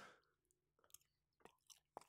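Faint chewing of a mouthful of food, heard only as a few soft, scattered mouth clicks over near silence.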